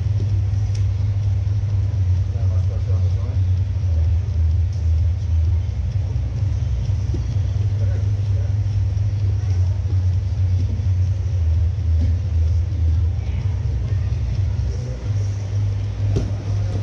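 A steady deep rumble with indistinct voices underneath.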